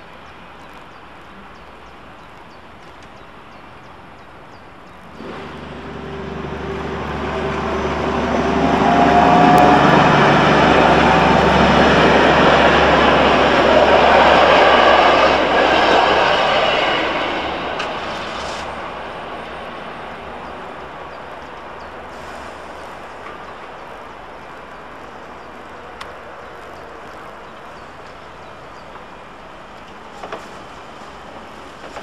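A train passing over the level crossing: it comes in suddenly about five seconds in, swells to its loudest in the middle with a faint whine from the wheels or motors, then dies away.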